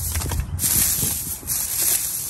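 Dry brassica seed stalks and pods rustling and crackling in a stainless steel colander as it is shaken and then as a hand crushes them, knocking the seeds loose to fall through the holes onto a woven bamboo tray.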